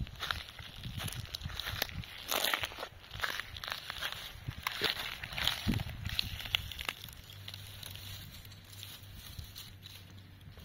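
Footsteps crunching and crackling on a dry carpet of pine needles and cones, irregular steps for about seven seconds, then stopping, leaving only a faint low rustle.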